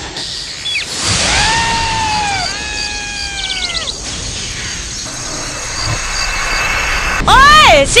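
A long, high-pitched creature cry in two drawn-out parts, each sliding slightly down in pitch, with a few short chirps at its end, over a steady outdoor hiss. Near the end a loud shout of the name "Shinji" cuts in.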